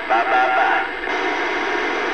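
CB radio receiver speaker: a brief garbled voice for under a second, then steady static hiss from about a second in as the received signal drops away.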